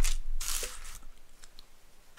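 A crinkly, tearing rustle of thin sheet material being handled, loudest in the first half second and then fading away.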